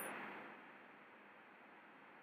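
Near silence: faint room-tone hiss as the voice trails off.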